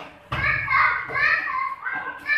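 Children's high-pitched voices shouting and calling out, starting about a third of a second in and running on with rising and falling pitch.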